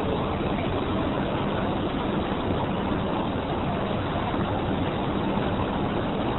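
Steady city street noise: a continuous, even roar of traffic and crowd with no single event standing out.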